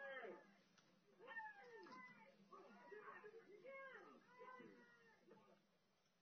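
Faint recorded voices, several overlapping, calling out with rising and falling pitch, played back from a video clip in the room; they die away shortly before the end.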